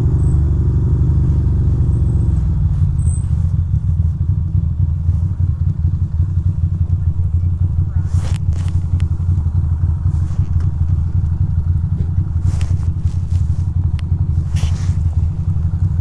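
2006 Ducati Monster 620's air-cooled L-twin engine running as the bike slows to a stop, settling into a steady idle about two to three seconds in, with a few faint brief clicks.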